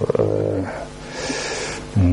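A man's low, drawn-out hesitation hum, held steady for under a second, followed about a second in by a short, soft hiss.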